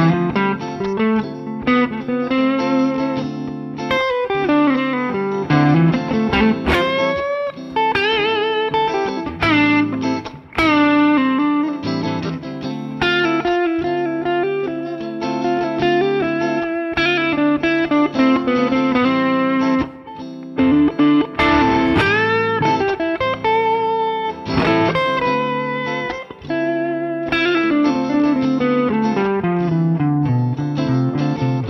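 Guitar playing a lead line in A minor that mixes the minor pentatonic scale with the natural minor's added F and B notes, with several bent notes and vibrato.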